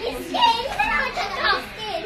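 A young child's high-pitched voice, chattering and calling out in short phrases while playing.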